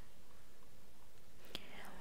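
A pause between spoken words: low steady hiss, with a single sharp click about one and a half seconds in and a faint breath just after it.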